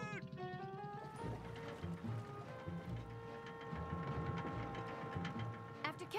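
Background score music: held chords over a low, pulsing beat, starting about a second in after a voice trails off.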